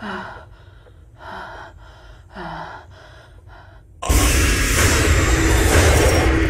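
A person gasping, a string of short ragged breaths in and out. About four seconds in, a sudden loud rushing noise cuts in and holds.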